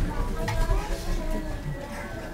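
Several ocarinas playing a melody together in short held notes.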